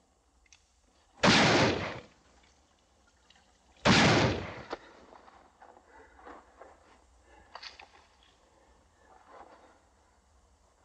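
Two gunshots about two and a half seconds apart, each sharp with a short echoing tail, followed by faint clicks and small handling sounds.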